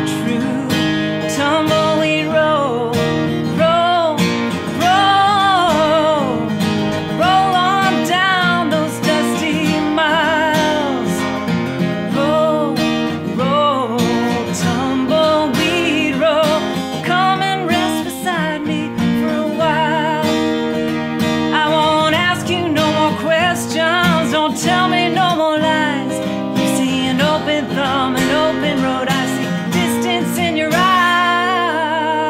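A woman singing a country song, accompanying herself by strumming an acoustic guitar.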